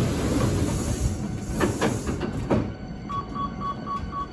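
Hankyu 8000-series electric train rolling slowly along the platform as it pulls in, with a steady rumble and a few short squeals. About three seconds in, outro music with a pulsing beep takes over.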